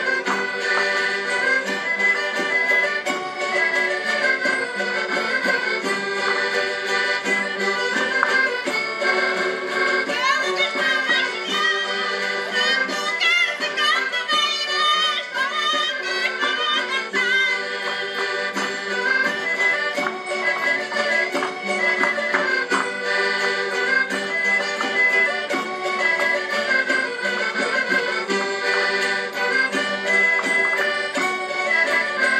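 A Portuguese rancho folclórico band playing a lively dance tune, led by accordion. Singing voices join in for several seconds in the middle.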